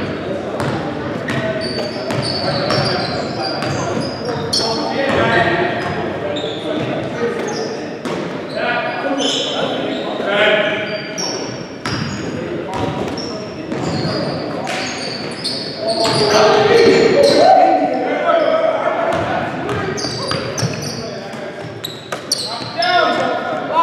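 Basketball game in an echoing gym: a basketball dribbled on a hardwood court, sneakers squeaking in short high chirps, and players calling out to each other.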